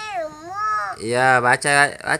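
A toddler's voice holding one long vowel that wavers up and down in pitch as she sounds out the Arabic letters of a Quran-reading primer. About a second in, an adult's lower voice follows with short repeated syllables.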